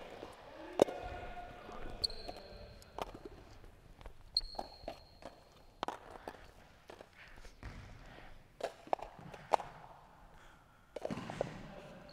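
Quiet footsteps and scattered light knocks on a wooden gym floor as plastic cones and basketballs are handled and gathered up. Twice a faint high steady tone sounds for about a second and a half.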